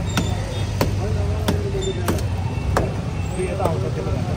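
Regular sharp knocks on brickwork, about three every two seconds, from the demolition of a brick wall, over a steady low rumble.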